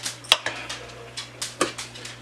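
Cutlery clicking and knocking against dishes: a handful of sharp taps, the loudest shortly after the start and about a second and a half in.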